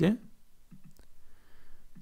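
A few faint computer clicks as a folder is selected in a file dialog, the clearest about a second in.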